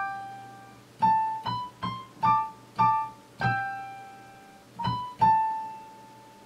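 Janko-layout Lippens keyboard playing a single-note melody in a piano sound: about eight notes picked out one at a time, each left to ring and fade, with the last note held.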